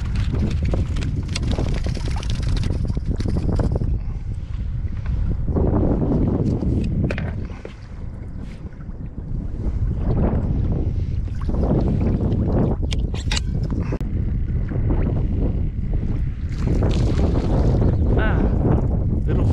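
Strong wind buffeting the microphone in gusts, with water sloshing around a kayak. The wind eases for a moment about halfway through. A few sharp clicks of handled gear come a little after that.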